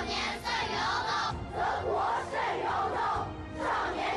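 A large group of children reciting a text in unison, the chorus of voices declaiming phrase by phrase with short pauses between lines ("少年胜于欧洲，少年雄于地球").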